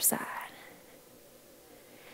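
A woman's voice ends the word "side" with a breathy trail, then quiet room tone of a large hall.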